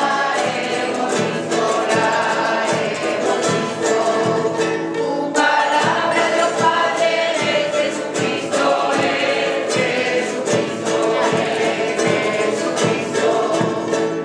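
A rondalla of mixed men's and women's voices singing in chorus to strummed acoustic guitars and other plucked string instruments.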